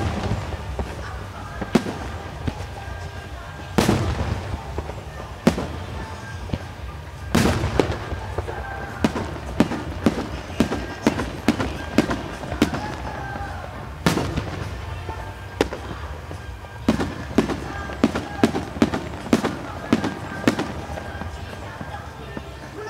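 Aerial firework shells bursting: loud single bangs a second or two apart, then rapid volleys of sharp reports about halfway through and again near the end.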